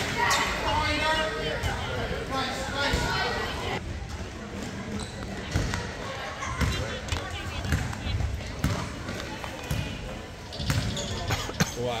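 A basketball being dribbled on a hardwood gym floor: dull bounces at about one a second through the second half, under spectators' chatter.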